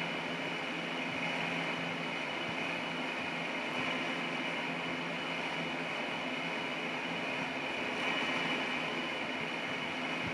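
Steady background noise in a room: a continuous even hiss with a faint low hum, no distinct events.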